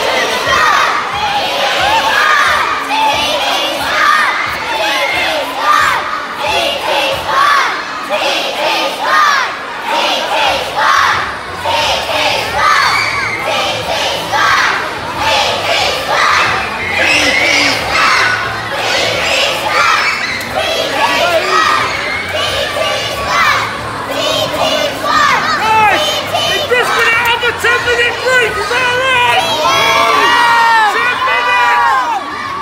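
A large crowd of young fans screaming and cheering, many high children's voices shouting over one another without a break.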